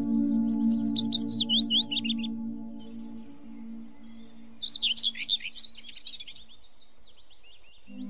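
Songbird singing in two bursts of quick, high whistled notes that slide down in pitch, the first in the opening two seconds and the second from about four and a half to seven and a half seconds. Beneath them a sustained low musical tone slowly fades away.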